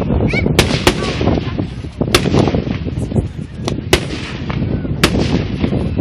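Aerial fireworks going off: about half a dozen sharp, irregularly spaced bangs over a continuous low rumble of further bursts.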